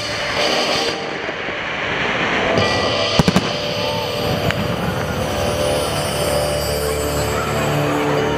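Fireworks crackling and bursting, with three sharp bangs in quick succession about three seconds in, over the show's music playing through loudspeakers. After the bangs the fireworks die away and the music carries on with steady held tones.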